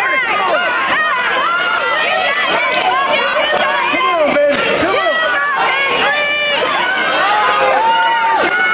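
A crowd of spectators shouting over one another, many voices at once without a break, during a wrestling bout.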